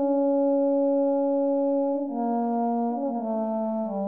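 Sampled euphonium from the Xtant Audio Model Brass virtual instrument, played from a keyboard: one note held for about two seconds, then a few changing notes.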